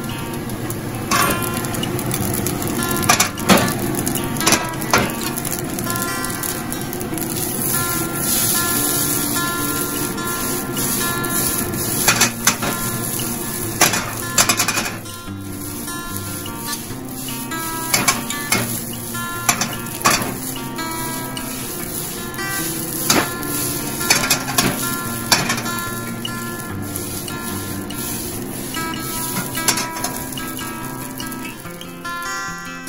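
Rice stir-frying in a wok: a steady sizzle with scattered sharp metal clanks and scrapes of a utensil against the wok, some in quick pairs. Acoustic guitar background music plays under it.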